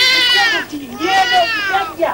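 A person wailing loudly in two long, high-pitched cries that arch up and fall away, one straight after the other.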